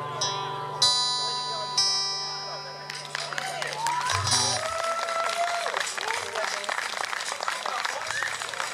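A band's closing chord, acoustic guitar strummed twice with a low bass note under it, ringing out and dying away over about three seconds. From about three seconds in, audience applause and cheering take over.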